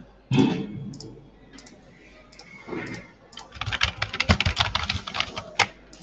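Computer keyboard being typed on: a few scattered key presses, then a fast run of keystrokes lasting about two seconds in the second half, as random keys are mashed. A brief, loud, muffled sound comes near the start.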